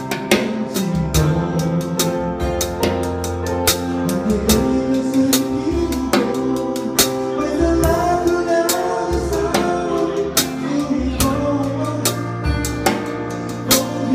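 A drum kit played along to a recorded song: sharp, regular stick hits on the snare and cymbals, several a second, on top of the song's own music.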